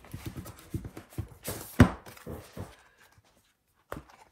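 Sticker books and paper being handled on a tabletop: a run of soft taps and rustles with one louder thump just under two seconds in, then quiet apart from a small click at the end.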